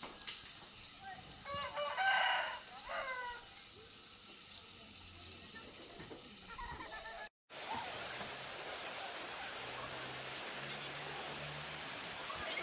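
A rooster crowing once, loud and drawn out with a falling end, a couple of seconds in. After a short dropout near the middle, a steady rushing noise carries on to the end.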